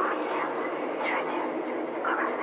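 Sound-design intro of a dark electronic track: a steady low drone under a rushing, noisy layer, with faint, indistinct voice fragments.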